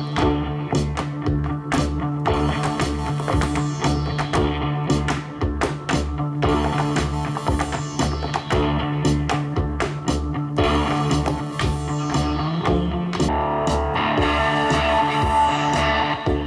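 Live electric guitar music over a steady pulsing bass beat, with sharp clicking heel taps from a dancer's shoes striking a board throughout. About thirteen seconds in, a brighter held guitar line comes in on top.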